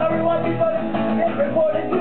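Live acoustic guitar strummed steadily while a man sings over it.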